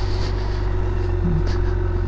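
BMW K1600GTL's inline-six engine running steadily at low revs, a low hum, as the bike rolls slowly.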